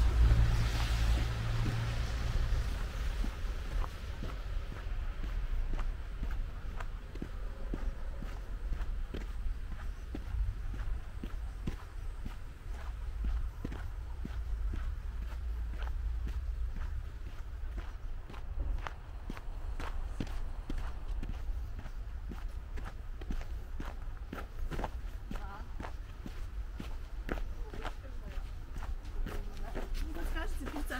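Footsteps on a trodden, snowy sidewalk at a steady walking pace, over a low rumble of street traffic that is loudest at the start.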